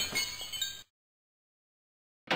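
Glass shattering, the shards ringing and clinking as they fall, cut off abruptly a little under a second in.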